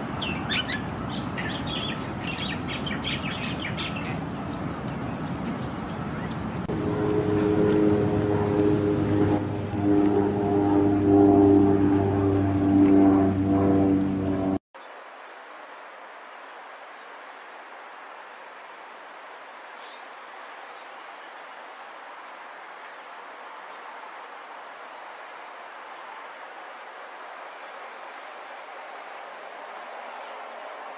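Small birds chirping for the first few seconds. Then a loud, steady drone of one fixed pitch builds up and runs for about eight seconds before it cuts off abruptly. After that only a faint, even outdoor hiss remains.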